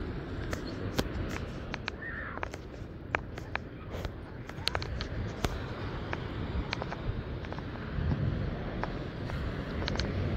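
Ocean surf breaking and washing up a sandy beach, a steady rush, with scattered sharp clicks throughout. A short falling bird call comes about two seconds in.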